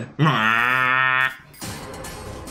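A loud cinematic brass hit, the familiar trumpet stab used in trailers, held for about a second and settling slightly in pitch at its start. It cuts off and gives way to quieter background music.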